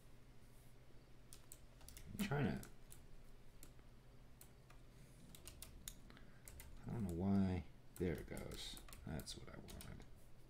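Irregular clicks and taps of a computer keyboard and mouse at a desk, over a steady low electrical hum. Twice a man's voice comes in briefly with wordless murmurs, the longer one about seven seconds in.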